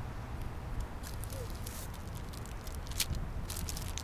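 Plastic wrapper of a meat snack stick being torn open, with a few sharp crinkles about a second in and a cluster more near the end, over a steady low background rumble.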